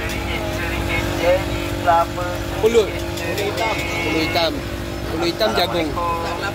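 People's voices talking in the background over a steady low mechanical hum and rumble, with a few light clicks.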